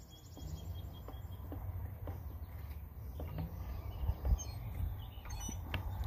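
Quiet hand handling of a rubber lip seal being worked over a transmission shaft, with a few faint clicks and taps, over a low steady background rumble.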